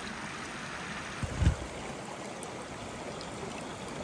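Small rocky woodland creek running, a steady rush of water, with a brief low thump about one and a half seconds in.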